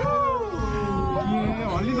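Passengers' voices in a crowded cable-car cabin making long, drawn-out calls. One rises then falls in pitch at the start, and others are held and slide slowly downward over a low rumble.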